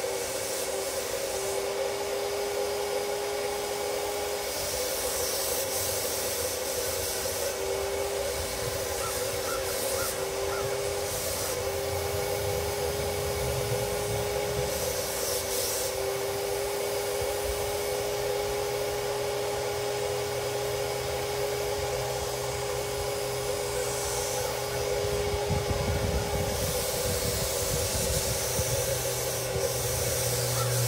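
Graco FinishPro HVLP 9.0 turbine running with a steady whine while its spray gun hisses in repeated bursts as paint is sprayed onto a steel air tank.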